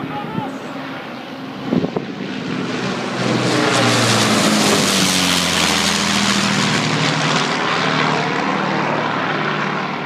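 Avro Lancaster bomber's four Rolls-Royce Merlin V12 engines running as it flies low overhead. The sound swells about three seconds in and is loudest as the bomber passes over. The engine note then drops in pitch as it moves away.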